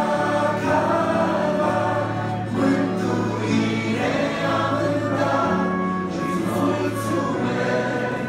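A group of voices singing a hymn together with violin accompaniment over long, held low bass notes, the melody moving from note to note every second or so.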